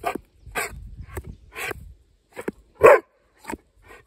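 A yellow Labrador-type dog barking on command, a series of about eight short barks about half a second apart, the loudest about three seconds in.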